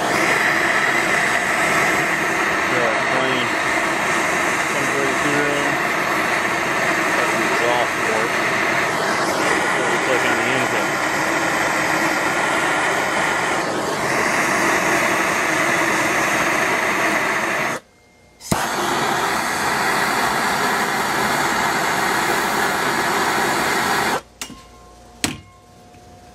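Hand-held propane torch burning with a steady hiss as its flame heats the cast-iron cylinder head around a valve-guide bore, so the frozen guide can be driven in. The hiss breaks off for a moment about two-thirds through and stops a couple of seconds before the end.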